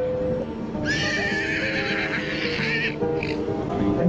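A horse neighing: one loud whinny lasting about two seconds, starting about a second in, followed by a brief short call.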